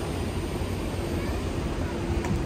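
Steady low outdoor rumble with a faint steady hum coming in about halfway through.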